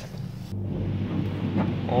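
Water jets of an automatic car wash spraying hard against the car, heard from inside the cabin as a steady rushing noise that starts abruptly about half a second in, with a low hum underneath.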